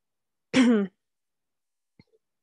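A woman clears her throat once, briefly, about half a second in.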